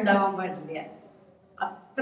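Speech: a person talking, trailing off into a short pause, with a brief vocal sound just before talking resumes.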